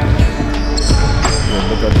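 Basketballs bouncing on an indoor court, a few separate thuds, over background music.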